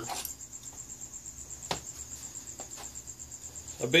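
A high, rapidly pulsing chirp held at one pitch, like a cricket, with a few faint clicks and knocks, the clearest about a second and a half in.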